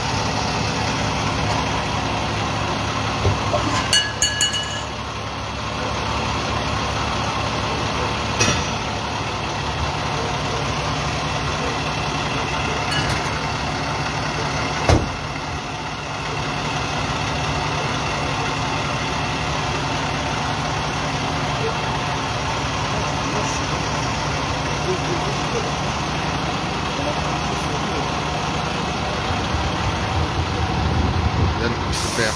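Fire truck's diesel engine idling steadily. Voices murmur in the background. A few short clicks and high chirps come about four seconds in, and a single sharp knock about halfway through.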